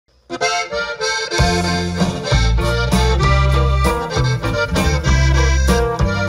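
Live regional Mexican band music led by accordion. A heavy bass line comes in about a second and a half in.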